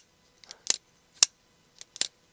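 Cold Steel AD-15 folding knife with goat-horn scales, its action being worked over and over: a crisp metallic click about every half second, the last one fainter.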